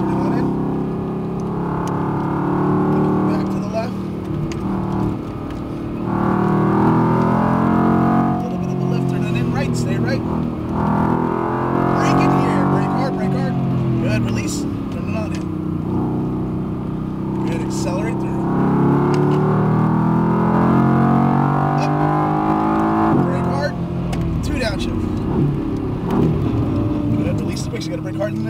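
Mercedes-AMG GT R's twin-turbo V8 heard from inside the cabin, accelerating hard on track. The engine note climbs and drops back at each upshift, then falls away as the car brakes and downshifts near the end.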